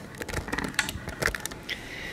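Scattered light clicks and taps over a soft rustle: handling noise from a handheld camera being moved around a room.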